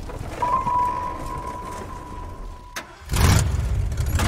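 Film trailer sound design: a low rumble under a steady high ringing tone that cuts off suddenly. After a moment of near quiet comes a loud, deep hit about three seconds in.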